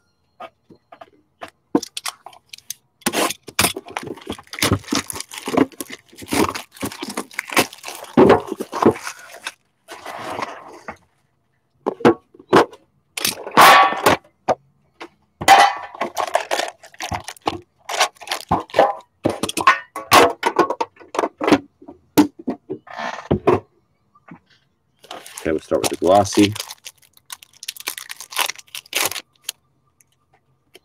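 Hand unwrapping of hockey card packs from a tin: irregular crinkling and tearing of plastic wrap and foil pack wrappers, with clicks and knocks of the tin and its plastic tray on the table.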